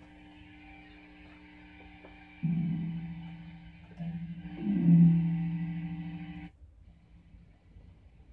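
An amplified electric guitar (Squier Stratocaster-style) humming through its amp, then its low strings ringing out twice as the guitar is handled, about 2.5 s and 4 s in. The second ring swells loudest with a wavering pitch and is then cut off suddenly, about 6.5 s in.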